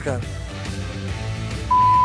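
Quiet background music with held notes, then near the end a loud, steady single-pitch beep lasting about half a second, the kind of censor bleep used to cover a spoken word.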